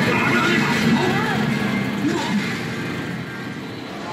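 Arcade din: game sound effects and a steady background roar mixed with voices, gradually fading lower toward the end.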